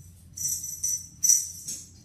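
A small jingle bell on a cat wand toy jingling in four quick shakes, the loudest a little past the middle.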